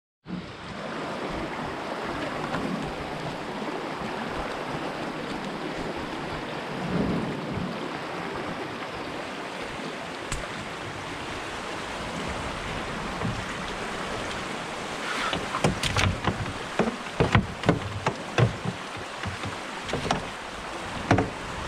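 Muddy floodwater of a river running high, over six feet, rushing steadily past a canoe. From about fifteen seconds in, a run of sharp knocks comes in over the water.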